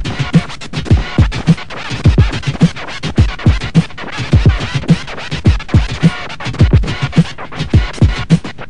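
Turntable scratching of a sample over a beat, played through M-Audio Torq digital-vinyl software from a timecode control record: quick back-and-forth scratch strokes over low, falling thumps that recur in a repeating pattern.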